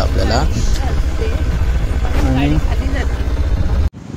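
Motorcycle riding along a dirt trail: engine running with a steady low rumble. It cuts off suddenly near the end.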